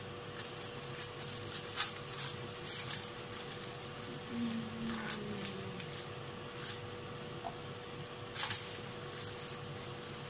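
Onions, peppers and mushrooms frying in a pan: a steady low sizzle with scattered pops and crackles, over a faint steady hum.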